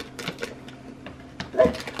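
Gift wrapping paper crinkling and tearing as a small present is unwrapped by hand: a run of quick, irregular crackles.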